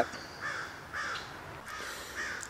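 Faint bird calls, a few short calls spaced about half a second apart.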